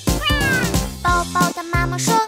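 Upbeat children's song backing music with a cartoon baby bird crying over it: one long falling wail a quarter second in.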